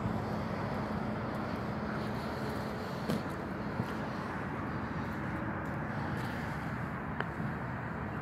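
A steady low mechanical hum over outdoor background noise, with a couple of faint knocks about three seconds in and near the end.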